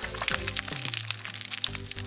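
Cartoon sound effect of crumbly tartar bits crackling and scattering: a dense run of small rapid clicks, over soft background music.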